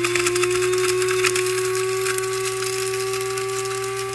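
Black+Decker One Touch blade coffee and spice grinder running at full speed, its motor whine holding one steady pitch. Bone-dry ghost peppers rattle densely against the stainless steel blades and clear lid as they are chopped into powder.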